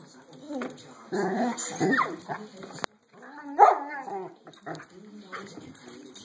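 Two pet dogs vocalizing at each other in play 'talk': short bursts of barks and whines, the main ones about a second in, around two seconds with a rising whine, and again at about three and a half seconds.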